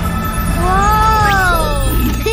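A cartoon character's single drawn-out vocal call that rises and then falls in pitch, over children's background music.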